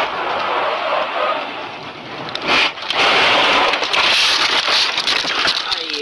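A car crash heard from inside the cabin: steady road noise, then a sudden hit about two and a half seconds in, followed by a couple of seconds of loud crunching and crackling as the car and its windshield are smashed.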